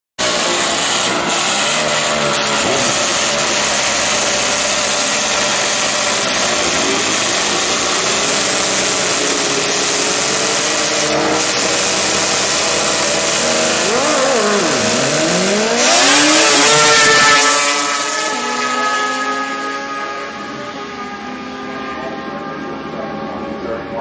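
Two drag-racing motorcycles running at the starting line, with engine revving and pitch swings shortly before the launch. The loudest stretch comes about sixteen seconds in as they launch, then the engine sound falls in pitch and fades as they run away down the strip.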